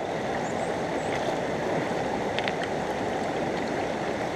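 Shallow river water running steadily over rocks and stones.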